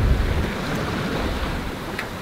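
Wind rumbling on the microphone over the steady rush of open-ocean waves around a sailing yacht under way.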